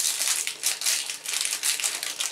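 Clear plastic wrapping crinkling in the hands as it is pulled off a lipstick case, a dense, irregular crackle.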